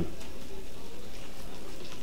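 Grilled steak sizzling on a hot grill plate: a steady, crackling hiss.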